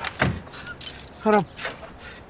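Car keys jangling at the ignition as the driver tries to start the car, with a single knock about a quarter second in.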